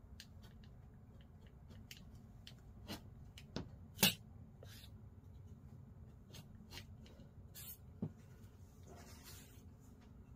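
Rotary cutter rolling through layered quilted fabric on a cutting mat to round a corner, heard as faint scrapes and small clicks, with a sharper tap about four seconds in.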